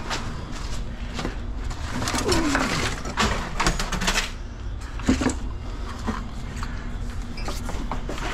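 Golf cart chargers and their cords being handled, rustling and clattering, with a cluster of sharp knocks about three to four seconds in and another a second later. A single low call glides down in pitch a little over two seconds in.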